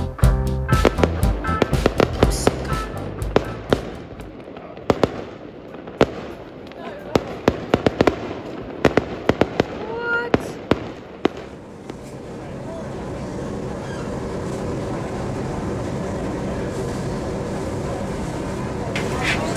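Fireworks going off: an irregular run of sharp bangs and crackles for about eleven seconds. After that a steady rushing noise takes over.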